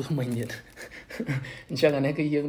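Speech only: a man talking, with a short pause in the middle.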